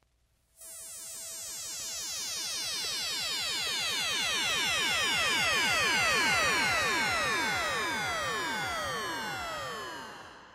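Synthesizer sweep from a vinyl record of 1970s-80s library music: a dense cluster of tones gliding steadily downward in pitch. It starts about half a second in, swells to its loudest about six seconds in, then begins to fade near the end.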